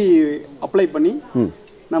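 A man talking over a steady, high-pitched drone of crickets.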